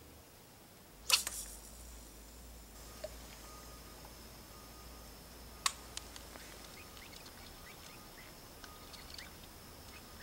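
A fishing cast: a short splash about a second in as the bobber and baited line hit the water. A sharp click follows a little before six seconds in, with faint ticks after it.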